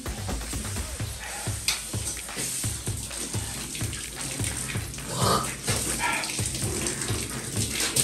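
Water running from a bathroom sink tap and a low bathtub tap, with background music with a steady bass beat underneath.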